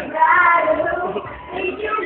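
A child singing a duet line in a school performance. The sung phrase trails off about a second in, and a short lull follows before the next line starts.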